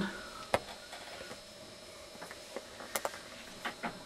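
Quiet room tone with a faint steady hum and a few small clicks and knocks, one about half a second in and a cluster near the end, from the camera being handled as it swings across the bench.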